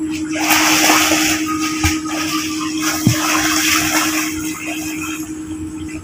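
Sea water splashing and sloshing, a rushing surge that starts about half a second in and eases off near the end, over a steady low hum.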